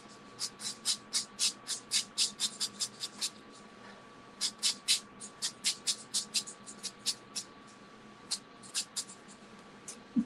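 Soft pastel stick stroked quickly back and forth on paper: a run of short scratchy strokes, about four a second, a brief pause a little past three seconds in, a second run, then a few scattered strokes near the end. A faint steady high tone sits underneath.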